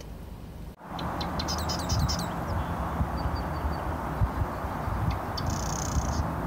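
Small birds chirping in quick short calls, clustered about a second in and again near the end, over a steady rushing outdoor noise.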